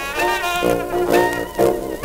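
A 1920s jazz band on a 78 rpm record, with the wind instruments playing bent, wavering notes in short phrases.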